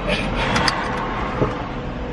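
A car running, heard from inside the cabin as a steady low rumble, with a few rustles and clicks from the camera being moved about half a second in.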